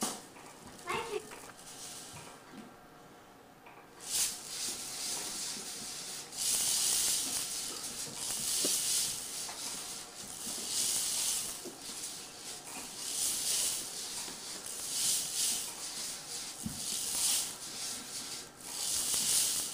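Plastic hula hoop spinning around a child's waist, giving a rhythmic swishing rasp with each turn, starting about four seconds in.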